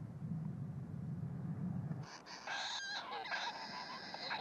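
Collared kingfishers calling: a low hum for the first half, then high, wavering chirps from about halfway.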